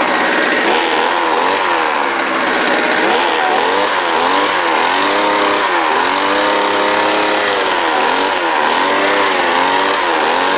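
Homelite ZR two-stroke gas leaf blower running, its engine speed rising and falling over and over as the throttle is worked.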